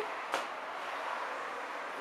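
A steady background hiss of room noise, with one short click about a third of a second in.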